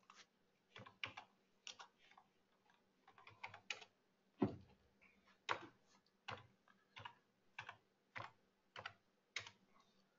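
Faint, irregular keystrokes on a computer keyboard, roughly one or two clicks a second, the loudest about halfway through.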